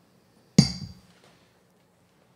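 A glass tumbler set down on a desk about half a second in: one sharp clink with a dull knock and a brief high ring.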